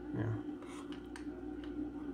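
Faint clicks and taps of a circuit board being handled and turned over, a few scattered through the two seconds, over a steady low hum.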